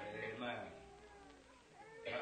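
Faint, drawn-out voices saying "Amen", much quieter than the preacher's speech either side, over a steady low hum.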